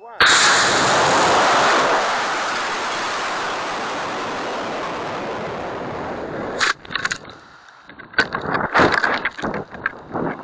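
A model rocket's cluster of E12 black-powder motors ignites with a sudden loud rushing roar, heard from a camera riding on the rocket. The roar fades slowly over several seconds. About seven seconds in it breaks into irregular gusts of rushing noise.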